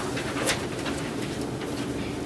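Papers rustling and pages being handled, in short crackly strokes, the loudest about half a second in, over a steady low room hum.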